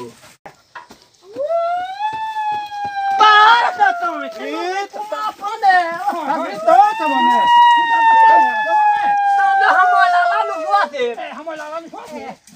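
A man's voice in long, high-pitched hollering calls: two drawn-out cries of several seconds each, with shorter vocal sounds between them.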